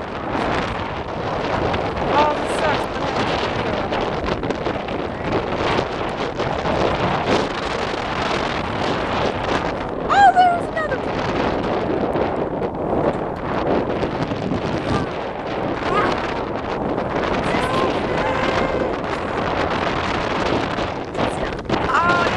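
Wind buffeting the microphone over open water, a steady rough rushing with gusty spikes. A few short voice exclamations break through it about two, ten and eighteen seconds in.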